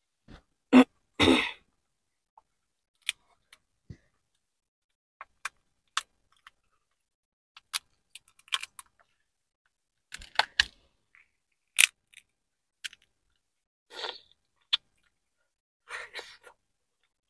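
Hands picking through a seafood boil: sparse clicks, small cracks and short rustles with silent gaps between. The loudest are two rustles about a second in, as a hand goes into the plastic bag.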